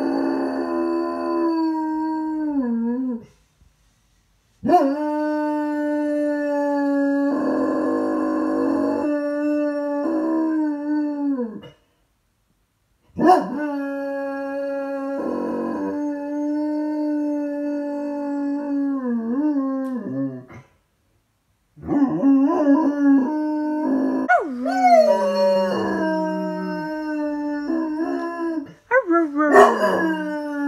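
A dog howling: several long, drawn-out howls, each trailing off in a falling waver, with short pauses between them.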